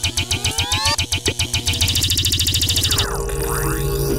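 Cartoon music and sound effects: a fast, even electronic beat with rising synth glides, changing about three seconds in to a low steady hum under swooping pitch glides.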